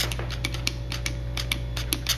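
Trigger spray bottle being pumped, giving short sharp spritzes in quick, irregular succession, about four a second.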